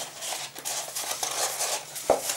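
Thin card stock rustling and scraping as hands roll it into a tight cone, a run of rapid small crackles and rubs.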